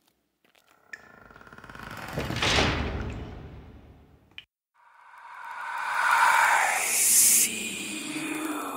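Spooky intro sound effects: a swell of sound that rises to a peak and fades away, a sharp click, then a second, louder swell with a hissing top that cuts off suddenly.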